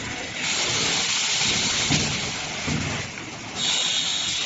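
Automatic plastic vacuum forming and trimming line running, with a loud hiss that starts about half a second in, drops away briefly near the end and comes back. A few low thumps sound underneath.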